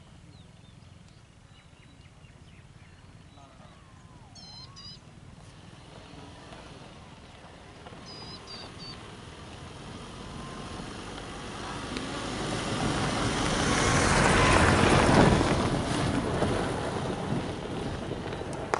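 A vehicle passing by: a broad engine-and-tyre noise swells from about ten seconds in, is loudest around fifteen seconds, then fades. Small birds chirp briefly a few times earlier on.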